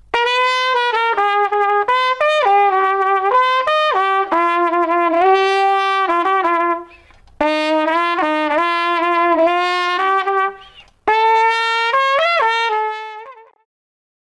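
Trumpet played with the detached cup of a Denis Wick adjustable cup mute held by hand over the bell as a plunger mute, giving a muted, covered tone. A melodic passage in three phrases with brief breaks, fading out near the end.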